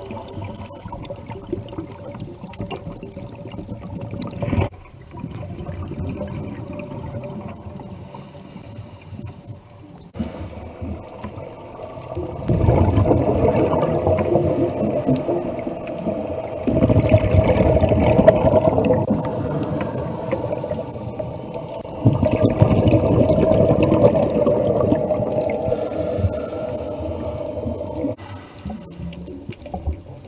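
Scuba diver breathing through a regulator underwater: exhaled air bursts out as bubbles in long, loud gurgling rushes, three of them in the second half, with quieter stretches between.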